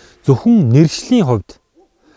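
A man's voice in Mongolian, with strongly rising and falling pitch for about a second and a quarter, then a short pause.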